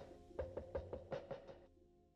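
Background music with a quick percussive beat over a sustained pitched line, fading almost out near the end.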